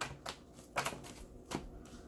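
Tarot cards being shuffled and drawn from the deck by hand: a few short, quiet snaps at uneven intervals.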